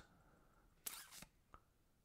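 Near silence, broken about a second in by a short soft clack and a faint click just after: keys pressed on a computer keyboard.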